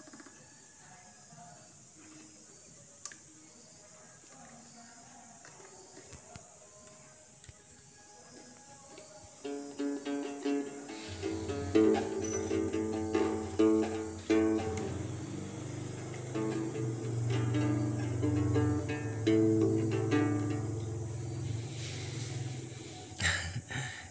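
Đàn tính, the Tày gourd-bodied long-necked lute, being plucked by an unpractised player: no real tune, only the instrument's sound. A few faint plucks come first. About ten seconds in, the playing turns louder and steadier, with a low sustained tone underneath, and it dies away shortly before the end.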